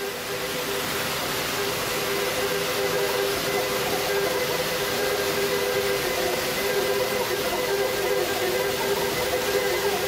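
Electro-acoustic live electronic music: a dense hiss-like noise wash that swells up in the first second or two and then holds, over a few sustained drone tones.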